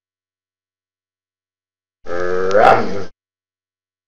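Silence, then about two seconds in a short sound effect for a logo ident: a pitched sound about a second long that rises in pitch and cuts off suddenly.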